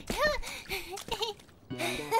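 A young child's high voice exclaiming and laughing, then background music coming in near the end.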